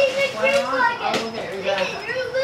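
Voices talking indistinctly, children among them.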